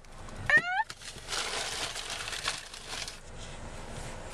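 A short rising squeal from a person about half a second in, then about two seconds of rustling close to the microphone that fades out.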